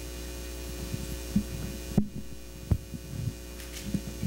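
Steady electrical mains hum from the hall's microphone and sound system, with a few short low thumps scattered through it, two sharper ones in the middle.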